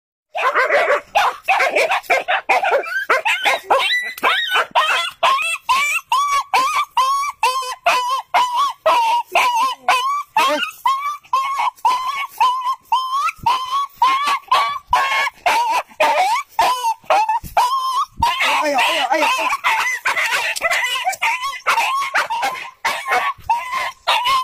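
A small dog barking rapidly and without pause in high yaps, about two to three a second. A person laughs briefly near the end.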